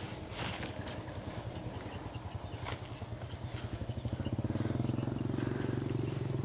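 A small engine running with a rapid, even low pulsing, growing louder from about four seconds in.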